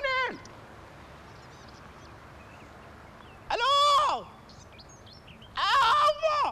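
A voice giving two short, loud, high-pitched shouts, about three and a half and five and a half seconds in, over a faint background with a few faint chirps.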